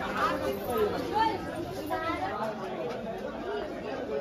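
Background chatter of several people talking at once, overlapping voices with no one clear talker.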